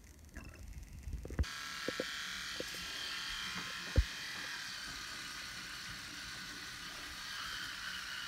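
Electric toothbrush switched on about a second and a half in, then buzzing steadily. There are a few small clicks, and one sharp knock about four seconds in. Near the end the buzz changes as the brush head goes into the mouth.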